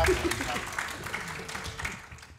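Concert audience applauding, with a few voices calling out early on; the clapping fades away toward the end.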